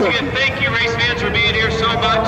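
Several voices talking at once, with a steady drone of one pitch underneath.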